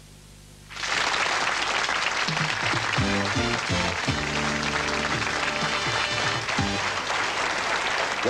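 Studio audience applause breaks out suddenly about a second in, with game-show music playing over it.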